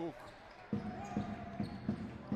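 A basketball being dribbled on a hardwood court, with regular thuds about two to three a second over steady arena crowd noise. The noise comes in suddenly about two-thirds of a second in.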